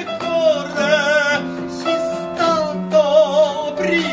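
A man singing an Italian song, holding long notes with wide vibrato, to upright piano accompaniment.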